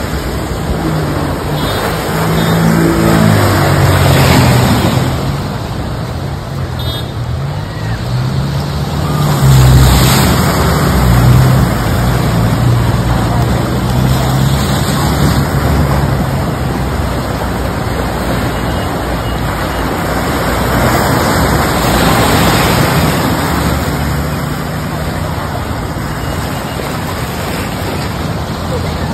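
Vehicle engines labouring as cars and a small truck push through deep floodwater, their pitch rising and falling, over a steady rush of flowing, churning water.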